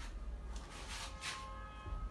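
Soft rustling and brushing from the handheld phone as it is moved about, with a low room hum underneath. A few faint steady ringing tones come in about halfway through and fade near the end.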